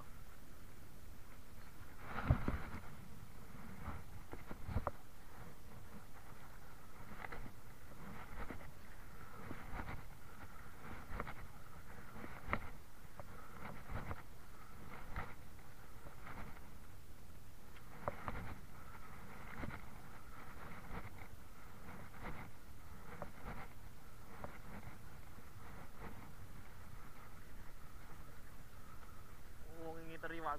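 Popping for giant trevally from a boat: irregular knocks and splashes every second or two, each a jerk of the rod that makes the popper chug across the surface, over steady wind and sea noise.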